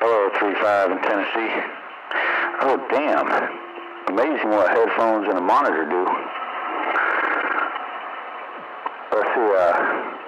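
Voices of other stations coming in over a vintage tube radio receiver. The speech is thin and band-limited, with static hiss filling the gaps between transmissions.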